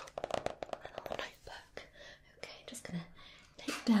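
Soft whispered speech, with light clicks and rustles from a small notebook being handled.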